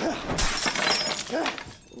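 Glass shattering and things crashing, a dense run of breaking that lasts about a second and a half and dies away near the end.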